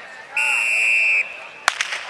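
A race start signal: a steady, high-pitched beep lasting just under a second that sends the runners away. About half a second later comes a single sharp crack.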